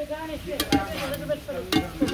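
Metal tongs tossing and stirring chow mein in a cast-iron wok, with several sharp clicks and scrapes of metal on the pan over a light sizzle.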